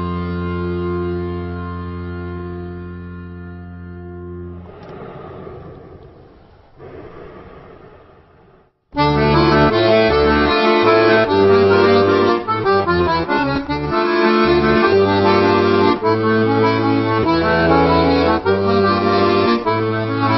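Accordion music. A held chord fades away over the first few seconds. After a brief silence about nine seconds in, a loud, lively accordion tune begins.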